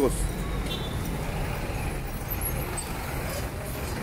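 Road traffic at a city intersection: cars and trucks passing, a steady low rumble of engines and tyres.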